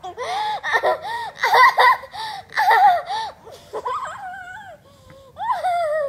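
A young girl giggling and squealing with laughter in a quick string of high-pitched bursts while a puppy licks her face, with a short lull about two-thirds of the way through.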